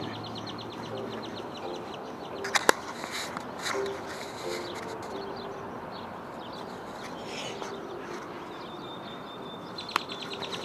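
Outdoor background noise with birds chirping, and a single sharp knock a little under three seconds in.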